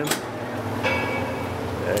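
Gym room background: a steady low hum, with a sharp click at the start and a faint brief voice-like sound about a second in.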